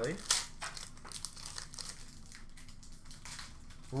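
Crinkling of a foil trading-card pack wrapper being handled and opened, with the light rustle of cards being sorted by hand. A sharper crackle comes about a third of a second in, then softer crinkles.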